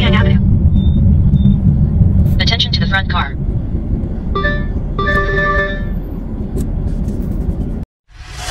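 Steady low road and engine rumble inside a moving car, with a brief voice about three seconds in. About four and a half and five seconds in come two short chiming warning tones from a dashboard ADAS unit, its forward collision warning alerting to the car close ahead.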